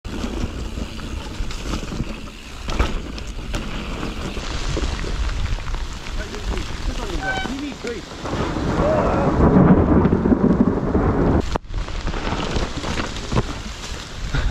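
Mountain bike ridden fast down a dirt trail covered in dry leaves, heard from a helmet or handlebar action camera: wind buffeting the microphone and tyres rumbling over the ground, with knocks from the bike over bumps. It gets louder about nine to ten seconds in and is cut off briefly near the end.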